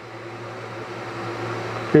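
Diode laser engraver's gantry moving on a framing pass along the Y axis: a steady motor hum and whir that slowly grows louder.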